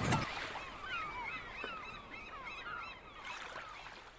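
Seagulls calling over the wash of ocean waves: many short, overlapping cries that fade out steadily.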